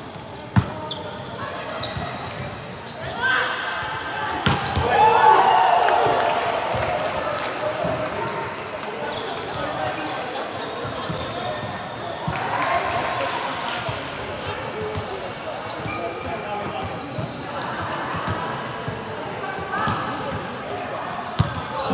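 Volleyball being played in a large sports hall: several sharp slaps of the ball being hit and landing, with players' voices calling out in bursts, all echoing off the hall.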